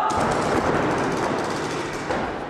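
Paintball markers firing in quick strings of shots in an indoor arena, over a steady wash of noise.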